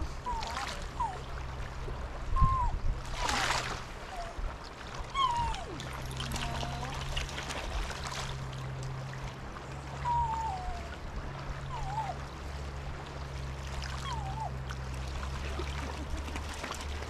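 High river water flowing steadily, with short squeaky sounds that rise and fall in pitch every second or two and a brief splash about three seconds in.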